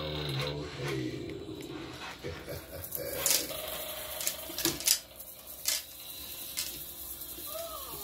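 Recorded pirate voice from an animated Halloween skeleton prop trailing off in the first second or so, then a run of scattered sharp clicks and knocks over a faint hum. A falling, wavering sound begins near the end.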